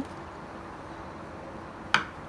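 Quiet kitchen room tone with a faint steady hum, and a single sharp knock near the end as a chef's knife strikes a wooden cutting board while slicing a mushroom.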